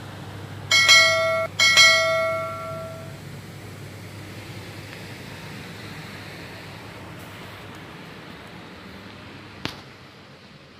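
A bell-like chime sounding twice about a second apart, the same tone each time, the second ringing on for about a second and a half. A steady low hum lies underneath, and a single sharp click comes near the end.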